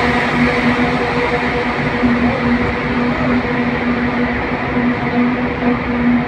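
Steady engine and tyre noise heard from inside a car driving through a road tunnel: an even rumble with a constant low hum.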